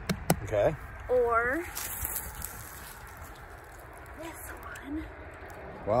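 Short bursts of a person's voice in the first second and a half, with a couple of sharp clicks at the very start. After that comes a quieter stretch of low, steady background noise with only faint scattered sounds.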